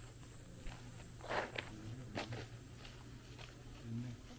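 Footsteps on a packed sand and gravel courtyard: a few irregular scuffing steps, the loudest about a third of the way in.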